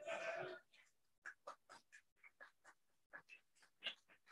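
Faint room sound: a brief voice in the first half-second, then a scattering of short, soft, irregular rustles and ticks.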